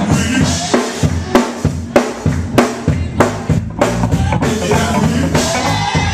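Live church band playing an upbeat instrumental groove: a drum kit keeps a steady beat, with sharp snare and kick hits a little more than one a second, over a bass line.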